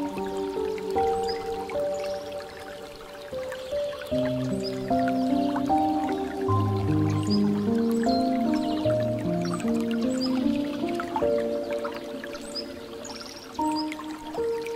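Soft, slow piano music, with lower notes joining about four seconds in, over the dripping and trickling of water falling from a bamboo fountain spout into a pool.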